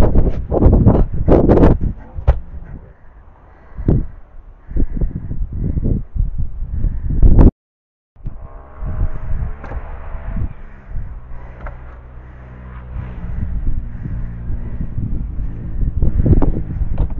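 Repeated heavy thumps and knocks as sawn logs are loaded into the back of a car, mixed with low rumbling. After a brief dropout comes a steady low hum with a faint rattle.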